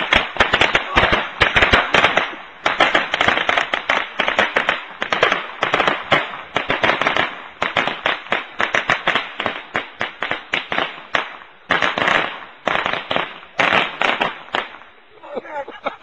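A string of firecrackers going off in rapid, uneven cracks, several a second, with a few short breaks in the later part and dying away near the end.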